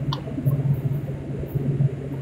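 A steady low hum with faint background noise and a few soft clicks, with no speech.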